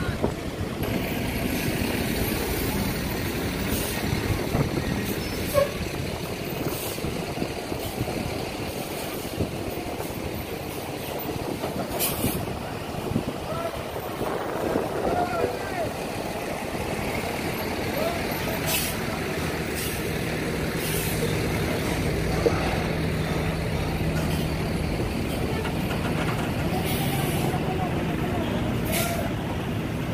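Large diesel tour coaches running slowly as they turn and pull past close by, their engines a steady low rumble, with several short air-brake hisses at intervals.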